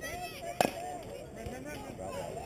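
A single sharp pop about half a second in: a pitched baseball smacking into the catcher's leather mitt. Scattered spectators' voices run underneath.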